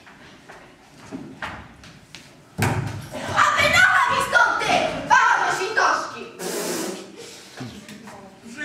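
A sudden thud about two and a half seconds in, then loud, high-pitched voices that echo in a large hall.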